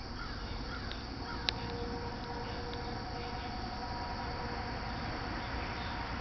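Steady outdoor background noise with a faint hum through the middle and a single sharp click about one and a half seconds in.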